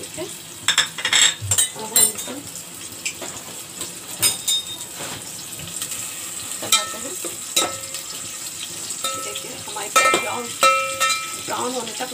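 Sliced onions and whole spices sizzling in hot oil in a metal pot, a steady frying hiss. A slotted metal spoon stirs them, clicking and scraping against the pot several times.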